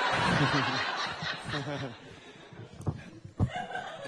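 Audience laughter dying away over about two seconds, with a man chuckling into the microphone. Near the end come two short knocks as the microphone is taken off its stand.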